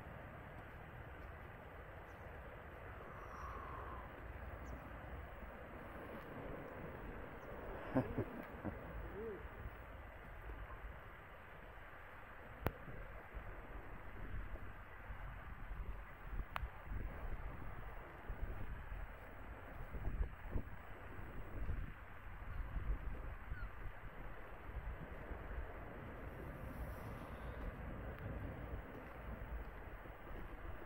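Outdoor seafront ambience: wind buffeting the microphone in uneven gusts, a short laugh about eight seconds in, and a few faint bird calls.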